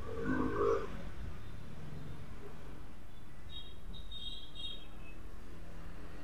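A hard-drive caddy being handled and a screwdriver worked on it: a short burst of handling noise in the first second, then only a quiet, steady background hum. Around the middle comes a short series of faint high chirps.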